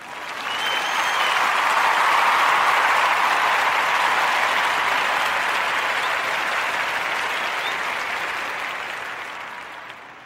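Crowd applause that swells in over the first couple of seconds, holds, then slowly fades out.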